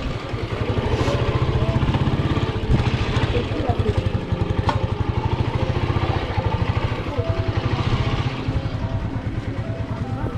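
A motorcycle engine running close by with a steady, rapid low putter, and faint voices in the background.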